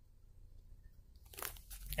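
Near silence, then a few soft rustles and knocks of a phone being handled and turned in the hand in the last second.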